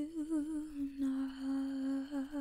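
A woman humming softly and close to the microphone, with no words. The melody wavers in pitch at first, then settles into one long held note about a second in.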